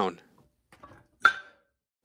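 A single short metallic clank about a second in, with a brief ring: a cast-iron Fitness Gear Olympic plate knocking against the barbell sleeve through its oversized, sloppy bore.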